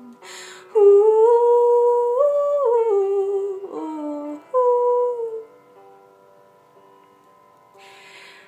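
A woman singing a wordless, hummed melody in a small room: a long held phrase that steps up and back down, a short low note, then a shorter phrase. After that a faint, steady instrumental backing carries on alone. She draws a breath near the start and again near the end.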